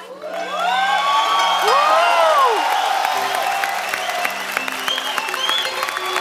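Studio audience and guests cheering and whooping, then clapping steadily, over background music.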